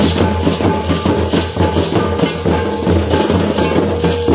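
Santali folk dance music: fast, dense drumming with a rattling, shaker-like percussion layer over a steady low boom.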